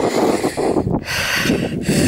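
A person's breathing close to the microphone: two long, noisy breaths with a short break between them about a second in.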